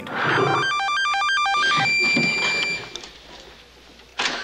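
Electronic warbling beeps, rapid tones hopping up and down between pitches like a trilling phone, then one held high beep that fades out about three seconds in. This is the sound effect of a science-fiction brainwave 'synchronizer' machine in a 1970s film.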